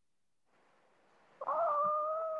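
A cat meowing once: one long, steady, high call of a little over a second, starting about a second and a half in.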